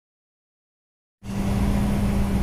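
Silence, then about a second in a truck engine starts to be heard abruptly, running steadily with a low hum, heard from inside the truck's cab.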